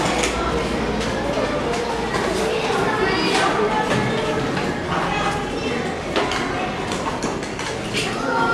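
Several children talking at once in a room, not as clear words, with a few sharp clinks of spoons on small ceramic cups and saucers.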